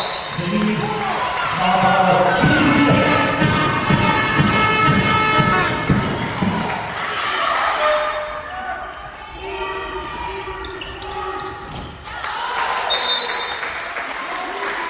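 A handball bouncing on a sports hall floor amid shouting voices of players and spectators; the voices are loudest in the first half and ease off before a shout near the end.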